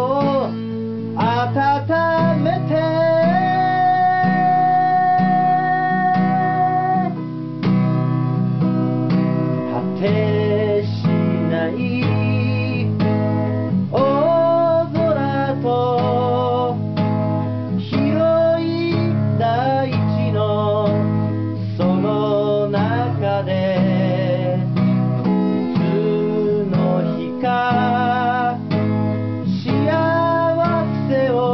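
Acoustic guitar strummed in steady chords under a solo voice singing a ballad, with vibrato on held notes and one long held note early on.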